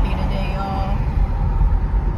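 Steady low rumble of car cabin noise while driving: road and engine noise heard from inside the moving car.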